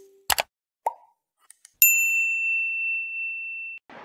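Subscribe-button animation sound effects: a sharp mouse click, then a short pop, then a single bright ding that rings steadily for about two seconds and cuts off suddenly.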